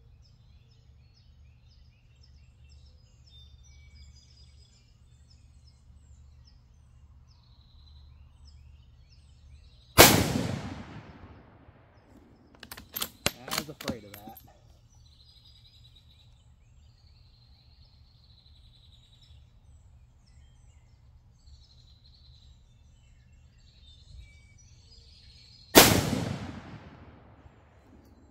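Two rifle shots from a Savage Axis II bolt-action rifle in 6mm ARC, about 16 seconds apart, each a sharp report with a trailing echo. A couple of seconds after the first shot, a quick series of metallic clicks as the bolt is worked to chamber the second round.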